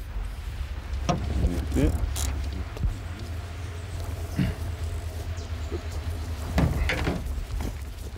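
Brief, unclear remarks between two men, in short fragments, over a steady low rumble. A couple of light clicks come in the first few seconds.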